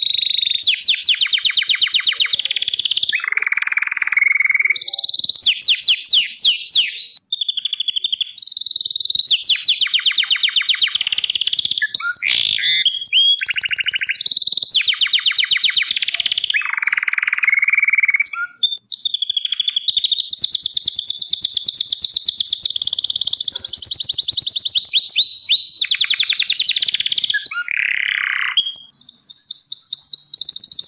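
A crested Gloster canary singing a long, almost unbroken song of rapid trills. High trilled phrases alternate with lower rolling passages and change every second or two, with only a few short breaks.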